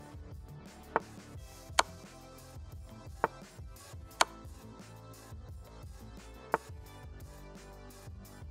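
Soft background music with five sharp clicks spread through it, the sounds of chess moves being played on an online board.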